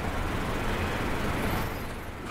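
Steady background room noise in a hall, a low rumble with hiss picked up by the microphone.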